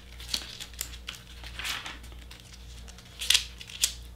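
Pages of a Bible being leafed through to find a passage: several short, crisp paper rustles a second or so apart.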